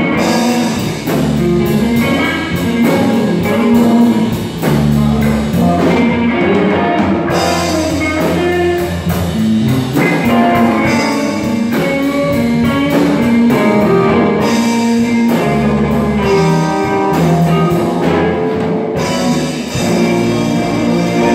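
Live rock band playing: electric guitars and bass over a drum kit, with a steady run of cymbal strokes that drops out briefly a few times.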